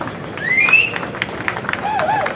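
Background noise of an open-air gathering in a pause between a man's amplified sentences. A short rising call comes about half a second in, and a faint wavering voice near the end.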